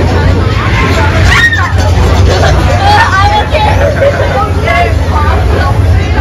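Voices chattering over a steady low hum from the haunted-house ride's running machinery.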